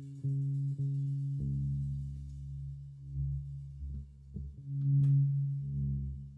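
Live jazz trio of saxophone, guitar and drums playing a quiet, slow passage: low notes held and ringing, with soft note onsets and light drum and cymbal touches.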